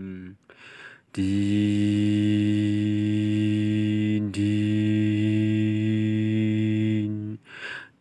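A man's voice holding one long, steady, low hum, mouth-imitating a truck engine while pushing a toy truck; it starts about a second in, dips briefly about halfway, and stops shortly before the end.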